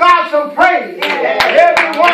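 A man's voice calling out, then from about a second in rapid, dense hand clapping from a congregation, with voices shouting over it.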